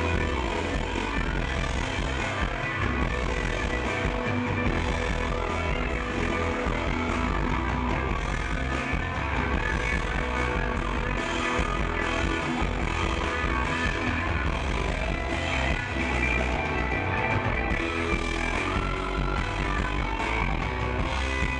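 Live rock band playing an instrumental passage, with electric guitars over bass and drums, and no vocals.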